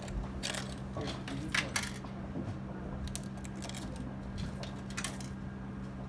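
Coins pushed one after another into a vending machine's coin slot, clinking and rattling through the coin mechanism in a string of sharp clicks, over a steady low hum. The credit stays at 20 yen: the coins are 1-yen coins, which the machine rejects, dropping them through to the return cup.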